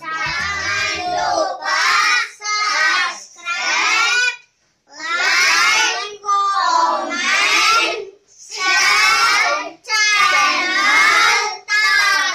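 A group of young boys singing together in loud short phrases, with a brief pause about four and a half seconds in.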